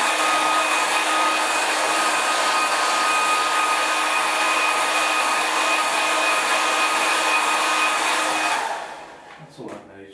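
Handheld hair dryer blowing on a wet watercolour painting to dry the paint: a steady rush of air with a high whine running through it. It is switched off about a second before the end.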